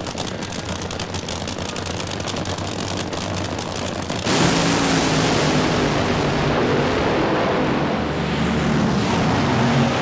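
Two supercharged nitro Funny Car engines at the starting line, running with a rapid crackle. About four seconds in, both launch at full throttle: a sudden, much louder blast that holds steady as they run down the track.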